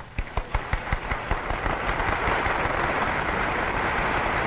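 Audience applauding. It starts as scattered separate claps and within about a second and a half builds into dense, steady applause.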